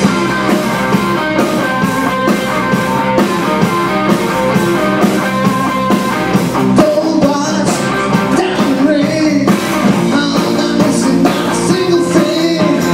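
Live rock band playing on stage with electric guitars and a drum kit, and singing in the second half.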